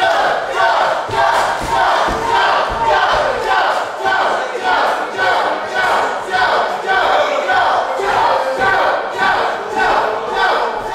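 Wrestling crowd chanting in a steady rhythm, about two beats a second, with a few low thuds in the first few seconds.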